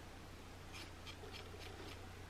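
Baby nail clippers snipping a baby's fingernails: a few faint, quick clicks, several in pairs, in the second half.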